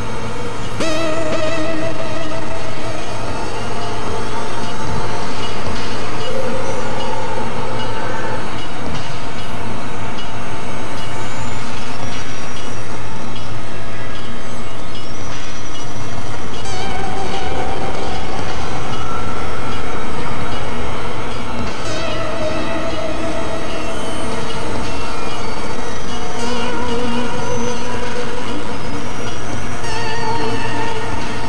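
Experimental synthesizer drone and noise music: layered held tones, some of them wavering in pitch, over a steady low hum and noisy wash. A slow rising glide comes in a couple of seconds in, and the mass dips slightly in loudness about two-thirds of the way through.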